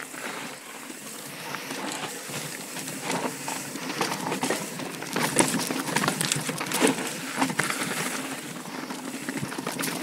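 Yeti SB4.5 mountain bike riding over rocky dirt singletrack: steady tyre noise on dirt and rock, with frequent rattles and knocks from the bike over bumps that get busier from about three seconds in.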